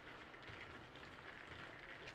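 Faint outdoor ambience: a low, even hiss of background noise with no distinct sound standing out.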